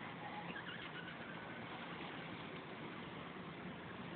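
Faint steady outdoor background noise, with a faint, brief high-pitched sound about half a second in.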